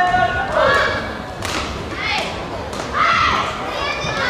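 Badminton rally on an indoor court: sharp racket strikes on the shuttlecock, shoes squeaking on the court floor, and a thud as a player goes down onto the court near the net. The hall echoes.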